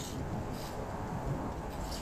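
Strong wind blowing over the microphone: a low, unsteady rumble with short rustling hisses near the start, about halfway in and near the end.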